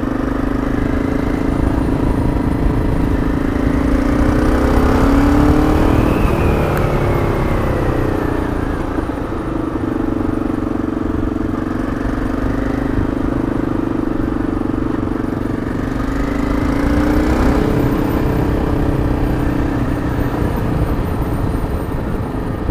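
Motorcycle engine running while riding. Its note climbs about four seconds in, drops back, and climbs and falls again later as the revs rise and fall, with wind rumble on the microphone underneath.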